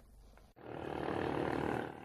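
Outdoor background noise: a steady rushing haze that cuts in about half a second in and drops lower near the end.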